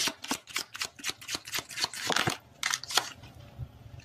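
A tarot deck being shuffled by hand: a fast run of crisp card clicks in the first second or so, then a few scattered snaps.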